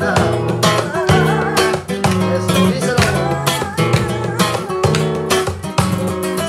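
Nylon-string Spanish guitar strummed in a steady, rhythmic flamenco-style pattern, with a woman singing over it and hands clapping along.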